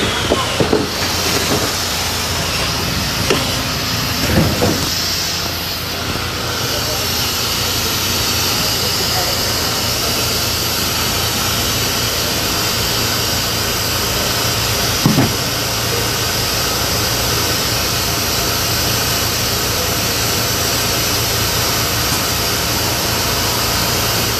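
Packaging line of a cartoner and a case erector and sealer running steadily, with a constant hum and hiss. There are a few knocks in the first five seconds and one sharp knock about fifteen seconds in, typical of cartons and cases being handled and moved along.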